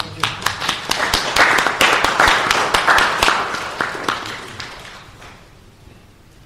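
Audience applauding, dense and loudest for the first three seconds or so, then thinning out and dying away about five seconds in.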